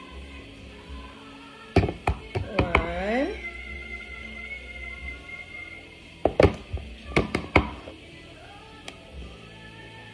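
Metal spoon knocking while ice cream is scooped and tipped into a plastic blender cup: a cluster of sharp knocks about two seconds in and another run of knocks between about six and eight seconds.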